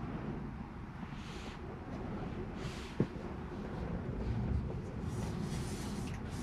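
Low, steady road and tyre rumble inside the cabin of a Tesla electric car rolling slowly, with no engine sound. One sharp click about halfway through, and a few brief hissing sounds.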